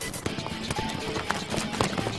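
Hoofbeats of horses being ridden, a run of irregular knocks, with background music under them.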